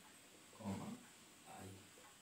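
A man's voice: two short, low murmured sounds, one about half a second in and another about a second and a half in.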